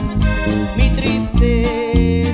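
Norteño band playing a song: button accordion melody over acoustic guitar, electric bass and a drum kit keeping a steady beat.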